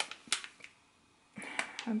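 A few faint crinkles of a plastic packet of ground turmeric as it is handled and tipped over a bowl, with a quiet gap in the middle.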